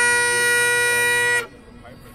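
A Naill plastic Great Highland bagpipe sounds one long held chanter note over its steady drones, ending the reel. The chanter and drones then cut off together about one and a half seconds in.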